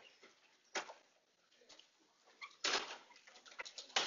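Faint scattered rustles and knocks of handling and movement, with a short burst about a second in and a longer rustle near three seconds.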